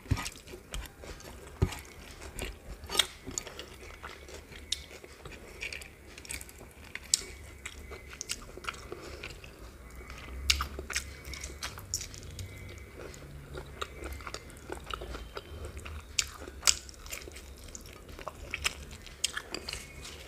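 Close-miked chewing of a meal of rice and curry eaten by hand, with irregular sharp crunchy bites and mouth clicks.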